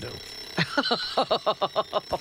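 A woman laughing: a quick run of short 'ha-ha' bursts, about seven a second, starting about half a second in.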